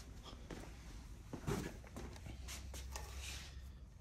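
Faint footsteps on a concrete floor with light rustling and small knocks of hand-held handling, over a low room hum.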